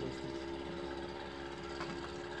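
An engine running steadily in the background, a constant even hum, with a faint tap near the end as a small plastic case is set down on the table.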